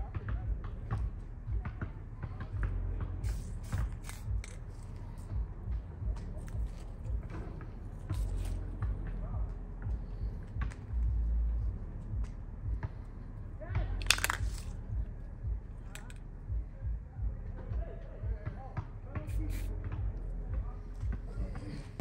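Camouflage netting rustling and a rifle being handled, with scattered clicks and scrapes over a constant low rumble. There is one short hiss about fourteen seconds in.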